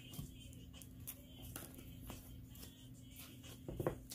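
Quiet handling of an oracle card deck: a few soft clicks and taps, then a louder rustle of cards near the end, over a steady low hum.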